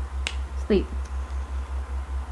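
A single sharp finger snap, the hypnotic trigger for dropping into trance, followed by a woman saying "sleep". A low hum pulsing about six times a second runs underneath.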